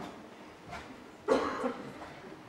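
A short, two-part cough about a second and a half in, over the low noise of a hall, with a few faint knocks before it.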